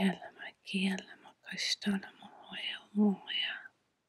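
A woman speaking softly, in a breathy, near-whispered voice, stopping shortly before the end.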